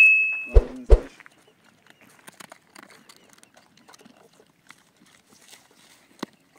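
Two dogs eating from a dish on the ground, with faint, scattered crunching and chewing clicks. It opens with a metallic ring fading out in the first half-second and a short vocal sound from the man about half a second in.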